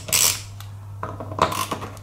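Ratchet screwdriver clicking in short bursts as it undoes small security screws in a hard drive's metal case: one burst at the start and another about one and a half seconds in.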